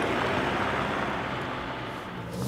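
Ford Ranger Raptor pickup driving away: its bi-turbo diesel engine and tyre noise fading steadily as it pulls off down the lane.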